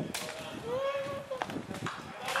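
A sharp smack of a boot on an Australian rules football right at the start. It is followed by a long shouted call held for most of a second, and a smaller knock about a second and a half in.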